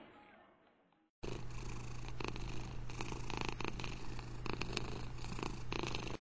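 A Manx cat purring steadily close to the microphone, starting abruptly about a second in after a short silence, with a low hum and a crackly texture.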